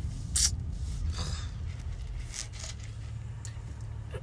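Steady low hum of a car cabin with the car idling, with a few short scraping rustles in the first couple of seconds.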